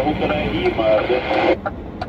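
A voice talking for about a second and a half, thin-sounding like a radio, then stopping, over the steady low drone of a moving truck cab.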